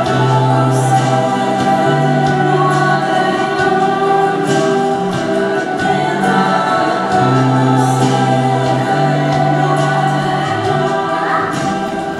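Israeli worship song with a woman singing lead over backing voices and band, long notes held, played from a projected music video through the hall's speakers.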